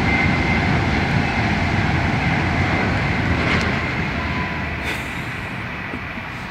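Train going past: a steady rumble with a faint thin high whine, slowly fading over the last couple of seconds.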